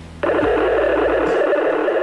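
Static hiss from a VHF marine radio's speaker: a steady, narrow-band burst of noise that comes on abruptly a moment in and lasts about two seconds, as the set picks up an incoming transmission.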